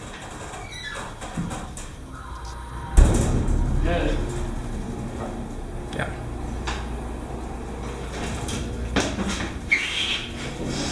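Otis hydraulic elevator car starting with a sudden jolt about three seconds in, then a steady low hum from the hydraulic pump as the car rises.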